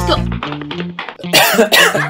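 Background music with a repeating bass line. About a second and a half in, a person coughs.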